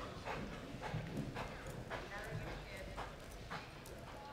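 Hoofbeats of a loping horse on soft arena dirt, a short thud about every half second.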